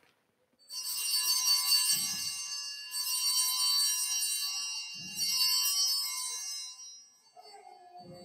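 Altar (Sanctus) bells, a cluster of small hand bells, shaken three times at the elevation of the chalice. The bright ringing is renewed about two seconds apart and dies away near the end.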